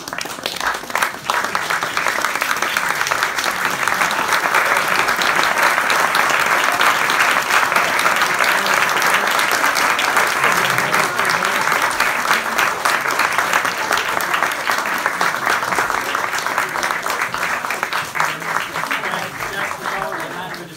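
Audience and cast applauding, a dense steady clapping that builds over the first couple of seconds and eases off near the end.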